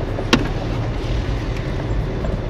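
Car driving, heard from inside the cabin: a steady low rumble of road and running noise. One sharp click or knock sounds about a third of a second in.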